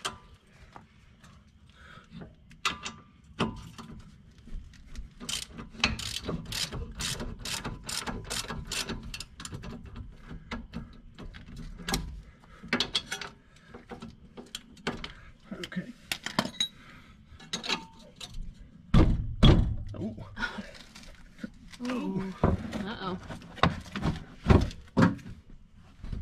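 Hand ratchet wrench clicking in quick runs as it works the strut-to-steering-knuckle bolts on a car's front suspension, with a few heavy thumps about two-thirds of the way through.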